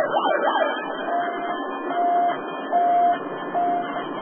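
Electronic siren-like alarm tones: a few quick rising-and-falling sweeps at the start, then a steady single-pitch beep repeating about once every 0.8 seconds.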